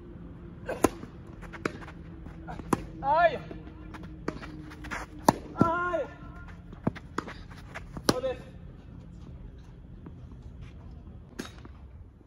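Tennis rally: a serve about a second in, then sharp racket-on-ball hits and ball bounces roughly every second, with short shouts from the players between shots.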